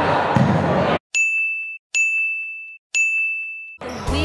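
Three bright dings, a little under a second apart, each a single ringing tone that fades and is cut off short. They follow about a second of noisy hall sound that stops abruptly.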